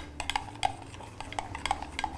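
Metal spoon stirring milk and wheat flour together in a small glass cup, clinking and tapping irregularly against the glass several times a second.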